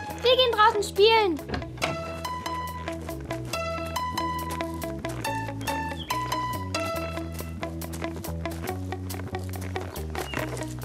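Light plucked-string background music with a steady bass line, the notes starting crisply. A short wordless voice with gliding pitch comes in the first second or so, before the music carries on alone.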